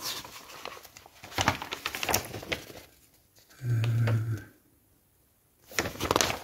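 Paper pages of a kit instruction booklet rustling and crinkling as they are handled and turned. About halfway through comes a brief low vocal sound, under a second long.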